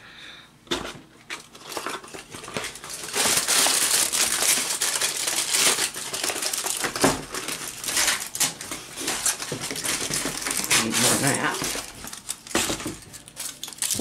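Reynolds Wrap aluminium foil being pulled from its roll and crumpled by hand, a dense crinkling full of sharp crackles that starts about a second in.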